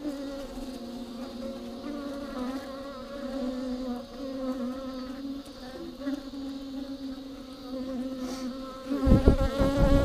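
A colony of bees buzzing steadily close to the microphone inside a hollow tree-trunk hive, a continuous hum with a wavering pitch. About nine seconds in, a short run of loud, low thumps on the microphone cuts across the hum.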